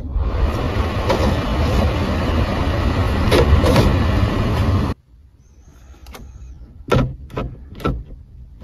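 Car's climate-control blower fan turned up high, a loud steady rush of air from the vents that cuts off suddenly about five seconds in. Two sharp clicks follow near the end.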